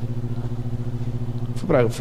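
A steady low electrical-sounding hum with several even overtones fills a pause in a man's speech. He starts talking again near the end.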